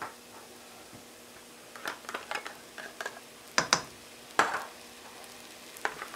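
Metal spoon scraping and knocking inside an open tin can as canned chicken is scooped out into a pan. There are a few small scrapes, then several sharper strokes just past the middle, over a faint steady sizzle from the pan.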